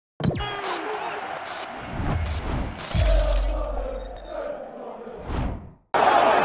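Sound effects and music of a video intro: a fast falling whoosh at the start, crashing hits, and a deep boom about three seconds in, fading out just before the end.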